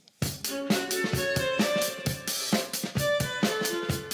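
Short burst of music with a quick, regular drum-kit beat and a pitched melody over it. It starts a moment in and cuts off just before the end.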